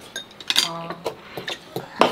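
Eating utensils clicking and clinking against bowls and dishes during a meal, several light scattered taps. A short hummed "mm" sounds about halfway through.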